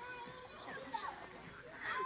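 Indistinct background voices, children's among them.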